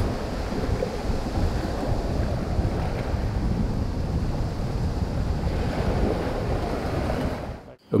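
Sea surf washing on a beach, with wind rumbling on the microphone; a steady noise that cuts away shortly before the end.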